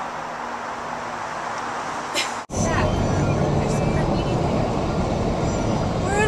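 Steady outdoor hiss of distant traffic, then an abrupt cut about halfway through to the steady low rumble of road noise inside a moving Toyota Prius, with faint voices.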